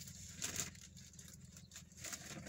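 Faint, steady low rumble of a car's cabin as it rolls slowly along, with a few soft clicks about half a second in.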